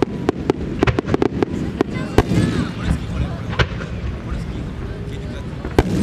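Shakudama fireworks (No.10 aerial shells, about 30 cm) fired in a rapid ten-shell sequence: a string of sharp bangs, thickest in the first two and a half seconds, another one near the end, over a continuous low rumble of booms. Spectators' voices are heard underneath.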